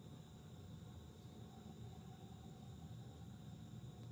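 Near silence: faint, steady background noise.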